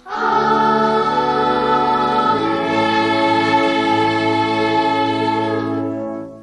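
Choir of boys' voices holding a sung chord over low sustained notes. The chord changes about two seconds in, and the sound fades away at the end.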